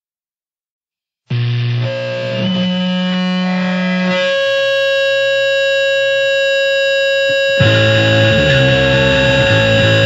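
Silence between tracks, then, just over a second in, the opening of a powerviolence punk song: loud, heavily distorted held tones ring out. About seven and a half seconds in, the full band comes in louder with drums.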